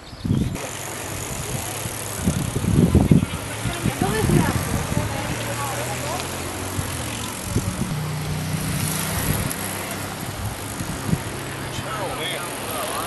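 A group of cyclists riding past on a paved path, with indistinct chatter from the riders, loudest a few seconds in, over the rolling of the bicycles.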